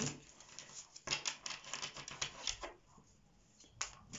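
A deck of tarot cards shuffled by hand: a quick run of crisp card clicks for about a second and a half, a lull, then a single click near the end.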